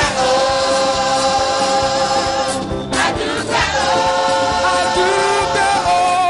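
Gospel choir singing long held chords over a rhythmic band accompaniment, with a short break about three seconds in before the next held chord.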